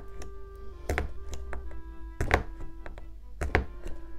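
Soft background music with sustained notes. Three dull thunks come about a second apart as objects are handled on a craft work desk.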